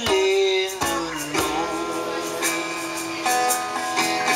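Live acoustic music: an acoustic guitar strummed in held chords, with hand percussion behind it.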